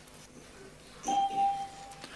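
Electronic chime of a council chamber's voting system sounding about a second in: one steady tone held for about a second, marking the close of a vote.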